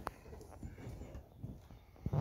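Footsteps on bare wooden floorboards: a few soft, uneven knocks, with a sharp click at the very start.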